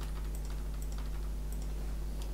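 Typing on a computer keyboard: a quick run of light key clicks over a low, steady hum.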